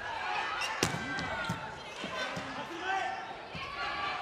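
A volleyball being struck during a rally in an arena, with one sharp hit about a second in and a few lighter ones. Shouting voices of players and crowd run through it.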